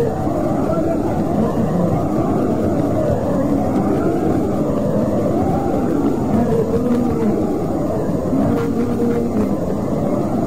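Indistinct, unintelligible voice speech, muffled and buried in a steady low rumbling noise from a poor-quality recording.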